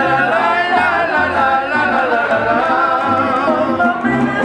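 A live mariachi group singing: male voices hold a wavering, vibrato-rich melody over guitar strumming and a regular bass pulse.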